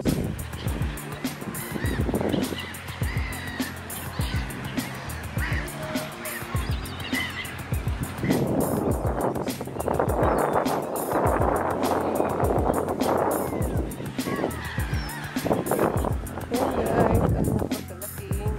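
A flock of gulls calling, many short overlapping squawks, over background music with a steady beat; the calling is densest and loudest in the middle.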